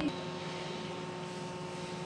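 A steady background hum with a few faint held tones, unchanging throughout.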